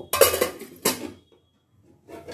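Steel pot lid clanking against steel pots as it is lifted and handled: two sharp, ringing clangs in the first second.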